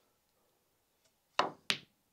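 Two sharp clicks of snooker balls about a third of a second apart, near the end: the cue tip striking the cue ball, then the cue ball hitting the pink.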